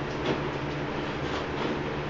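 Treadmill running with a steady motor hum and the belt's whir, while a person's feet land on the moving belt with soft, irregular footfalls.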